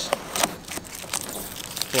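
Cellophane packing tape being peeled off a cardboard box, crackling irregularly, with one sharper rip about half a second in.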